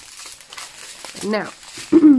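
Thin plastic bags of square diamond-painting drills crinkling as they are picked up and handled, a steady rustle for about the first second.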